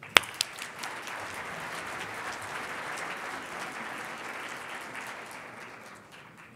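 Audience applauding, fading away near the end. A single sharp click sounds just as the applause begins.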